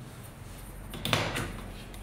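An aluminium light bar of an MS4 plug-in grow light pulled off its red plug-in socket on the central rail: one short scraping clack about a second in.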